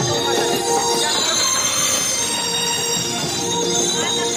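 Loud live devotional folk music through a PA system: held, steady tones over a dense, harsh wash of drums and percussion.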